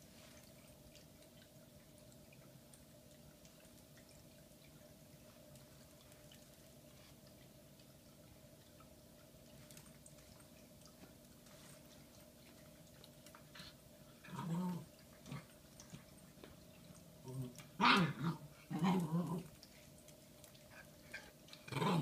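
A Shiba Inu puppy vocalising in a run of short whining, grumbling calls, the Shiba's 'talking', over a steady low hum. The first half is quiet apart from the hum; the calls come in the second half, loudest and closest together a little past the middle.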